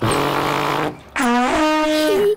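A tuba blown in two blasts: a rough, noisy first blast, then a pitched note that slides up briefly and then holds. The tuba is broken and sounds funny.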